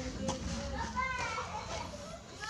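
Children's voices talking and calling out.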